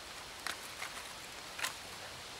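Small split-wood campfire crackling, with a few sharp pops about half a second in and again near the end, over a steady hiss.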